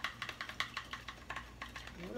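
Eggs being beaten with a fork in a plastic bowl: quick, light clicks of the metal against the plastic, about five a second.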